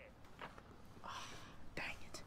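Quiet whispered, breathy voice sounds: a few short hisses and breaths, the strongest a little past the middle.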